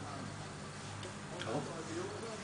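Low steady hum of an electric fan motor, with a soft tap about one and a half seconds in.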